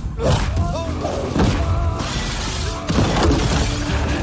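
Action-film fight sound effects: three loud crashing impacts, roughly a second or more apart, over dramatic background music.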